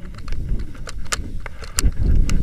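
Wind buffeting the camera microphone in a low rumble that swells near the end, with about five sharp metallic clicks as a tandem paragliding harness's buckles and carabiners are handled.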